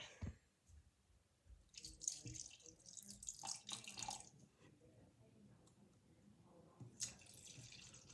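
Faint liquid pouring and splashing, in a spell of about two seconds starting about two seconds in and a shorter one near the end.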